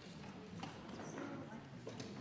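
Quiet murmur of voices in a large debating chamber while members vote, with a couple of light knocks or clicks.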